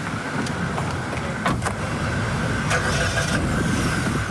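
Car engine running close by, with a steady rumble and street noise, and the car door shut with a knock about a second and a half in.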